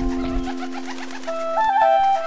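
A dove's wings fluttering for about two seconds, over background music with sustained low notes and a flute-like melody.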